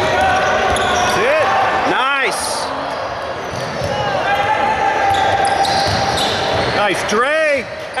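Basketball sneakers squeaking on a hardwood gym floor, several short sharp squeaks that rise and fall in pitch, the clearest about two seconds in and again near the end, with a basketball being dribbled during play.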